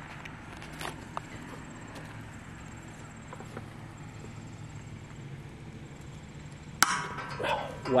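A stuck threaded fitting on a steel tank breaking loose under a large wrench. A couple of faint clicks come about a second in, then near the end a single sharp metallic crack with a short ringing as the threads give.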